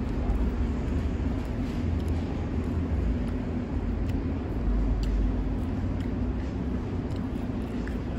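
Steady low outdoor background rumble, like distant traffic, with a faint constant hum and a few light ticks.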